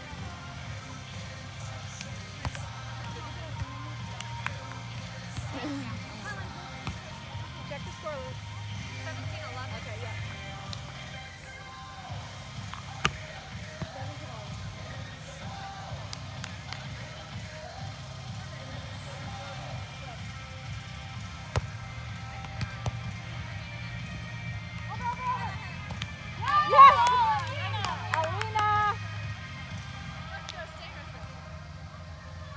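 Outdoor beach volleyball rally: faint voices and a few sharp ball hits over a steady low hum. Near the end comes a loud burst of excited shouting and cheering as the point is won.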